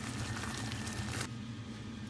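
Creamy sauce simmering in a pan while gnocchi are stirred through it with a silicone spatula, a steady hiss over a low hum. The hiss cuts off abruptly about a second in, leaving only the low hum.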